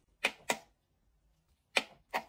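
Sharp plastic clicks from a gloved finger pressing the power button on a Let's Resin UV curing lamp: two close together near the start and one near the end. The lamp is not plugged in, so the presses do not turn it on.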